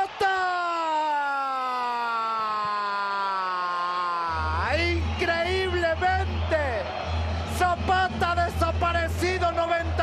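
A football commentator's drawn-out goal cry, one long held shout that slowly falls in pitch for about four seconds. Then music with a heavy steady bass comes in, under further shouting.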